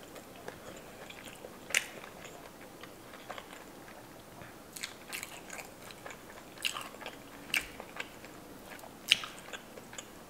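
Close-miked chewing of a mouthful of rice and fries soaked in Cajun seafood-boil sauce, with scattered short wet mouth clicks and smacks, the sharpest about two, five, seven and nine seconds in.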